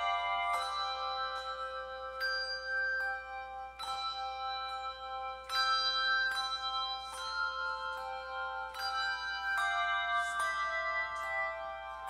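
Handbell choir playing a hymn: chords of struck handbells that ring on, a new chord roughly every second.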